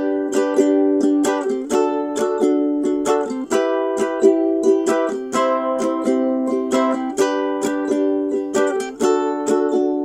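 A ukulele in standard G-C-E-A tuning strumming the chord progression G, D, E minor, C in a down-down-up-up-down-up pattern. The chord changes about every two seconds, and the progression starts over about seven seconds in.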